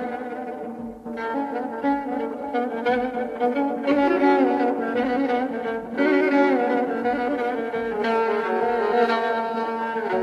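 Instrumental passage of Persian music on bowed string instruments: a melodic lead line that wavers in pitch over sustained lower strings, with no drums.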